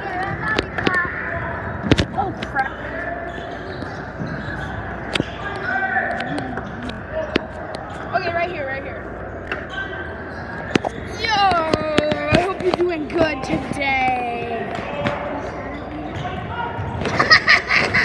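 Basketballs bouncing on a gym floor in irregular sharp thuds, with people talking nearby; the voices grow louder near the end.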